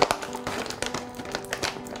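Soft background music of plucked acoustic guitar, with a few light taps and clicks. The sharpest tap comes right at the start.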